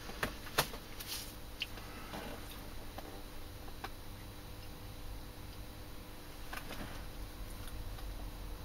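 A few light clicks and taps from objects being handled, mostly in the first two seconds with a couple more later, over a faint steady hum.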